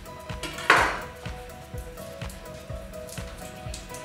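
A single loud crunching thump about three-quarters of a second in, as a garlic clove is crushed under the flat of a chef's knife on a wooden cutting board, followed by faint rustles of the peel coming off. Background music plays throughout.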